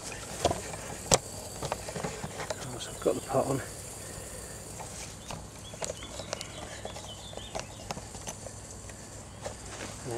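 Handling noise: scattered clicks and knocks as the camera and kit on the ground are moved about, with a brief burst of voice about three seconds in.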